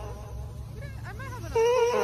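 A cat's sounds picked up by a handheld microphone and played back through a portable speaker: a short rising-and-falling call about halfway through, then a loud steady buzzing tone starting near the end.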